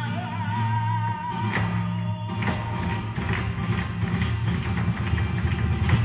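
Live flamenco music por tarantos: a held, wavering sung line over guitar fades out about a second and a half in. Then guitars continue under rapid, sharp percussive strikes.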